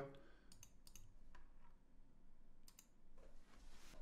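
A few faint computer mouse clicks over near silence: room tone.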